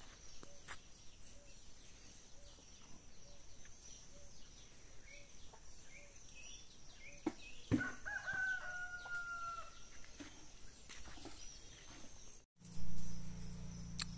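A rooster crowing once, a drawn-out call of about two seconds a little past halfway, over faint, regularly repeated chirps of small birds. Near the end the sound cuts out for a moment and a low steady hum begins.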